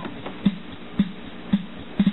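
Built-in rhythm unit of a Voyager compact preset organ playing a soft drum pattern, one light hit about every half second, with a faint low held tone under it.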